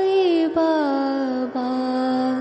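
Devotional Sai Baba mantra chant, sung to a melody over a steady drone. The voice glides down and settles on a low held note.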